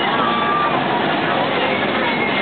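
Fairground midway din: many people chattering over a steady mechanical noise from the rides.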